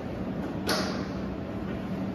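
Steady low machinery hum in a control room. About two-thirds of a second in, one sudden sharp knock with a brief hissing tail cuts through it.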